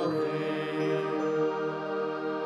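Devotional chant-style singing with accompaniment, holding the last chord of the sung refrain steady.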